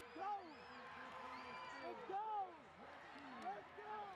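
Faint, overlapping voices of several football players and onlookers talking and calling out to one another at once, with no single voice standing out.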